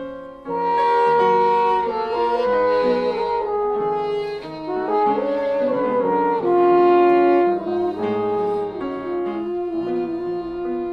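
A jazz trio of French horn, violin and piano playing together, with sustained melodic lines over piano chords; after a brief drop at the start, the full ensemble comes back in about half a second in.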